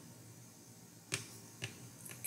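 Two short, sharp clicks about half a second apart, the first the louder, against faint room tone.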